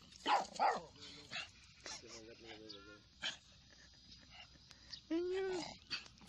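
Small dogs barking: a few short, sharp barks in the first three and a half seconds, with a longer drawn-out call near the end.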